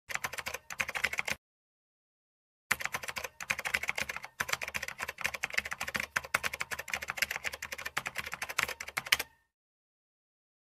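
Typing sound effect: a fast run of key clicks, stopping after about a second, then starting again after a short silence and running for about six and a half seconds before stopping sharply.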